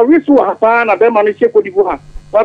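Speech only: a person talking continuously, with the sound of a radio talk-show broadcast.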